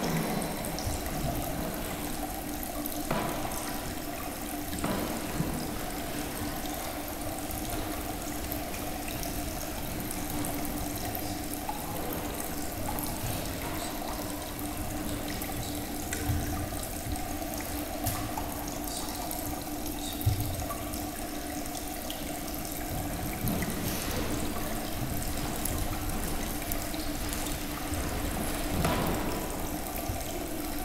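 Steady trickling of a small decorative water fountain over stacked stones, with a low steady hum and a few faint knocks.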